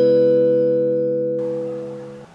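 A short musical logo jingle: the chord left by three struck notes rings on and slowly fades. Its high overtones drop out about one and a half seconds in.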